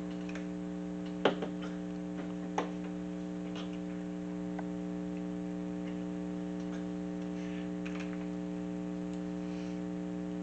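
A steady electrical hum from a faulty recording microphone, with two sharp knocks about a second and a half apart early on, shot glasses set down on a table after the shots, and a few faint ticks later.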